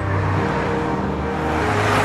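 Dense street traffic: car engines and tyre noise, growing louder toward the end, over a low steady music drone.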